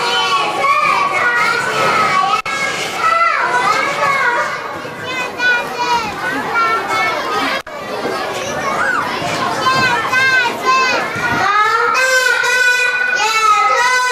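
Many young children chattering and calling out at once, with two brief clicks. About two-thirds of the way through, a young girl begins singing into a microphone, holding longer notes.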